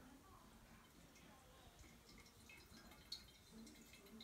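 Near silence with a faint trickle of kombucha being poured from a glass pitcher into a glass bottle, and one small click about three seconds in.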